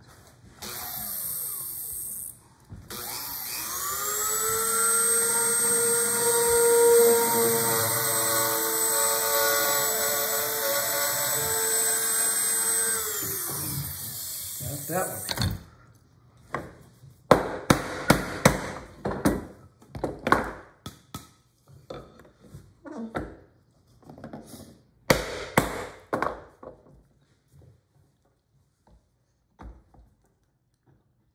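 Small trim router motor spinning up about three seconds in, running steadily for about ten seconds while cutting a narrow stringing groove in a wooden drawer front, then winding down. It is followed by a run of sharp knocks and clicks as the router and board are handled.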